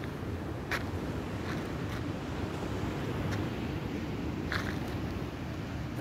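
Wind rumbling on the phone's microphone over a steady hiss, with a few faint short scuffs of footsteps on a dirt path.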